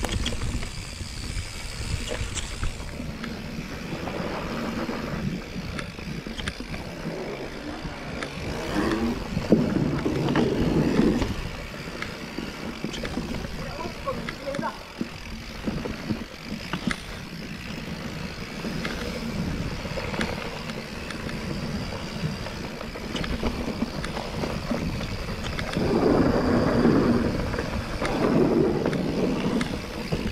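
Mountain bike riding down a dirt singletrack: tyres rolling over packed dirt and dry leaves, with the bike rattling and rumbling over the bumps. It gets louder and rougher about nine seconds in and again near the end.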